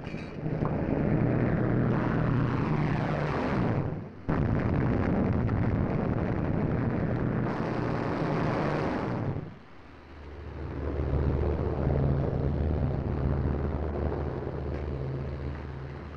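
Propeller engines of a twin-engine bomber, loud as the plane dives past. The sound breaks off abruptly about four seconds in and comes straight back. Soon after nine seconds it fades to a steadier, lower drone.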